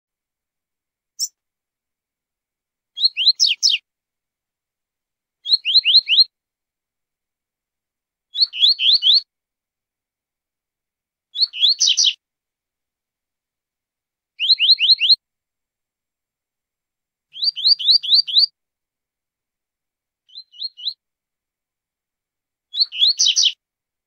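A double-collared seedeater (coleiro / papa-capim) singing the 'tui-tui zel-zel' song type: short, high phrases of four to six quick notes, each sliding downward, repeated about every three seconds. One phrase near the end is shorter and quieter.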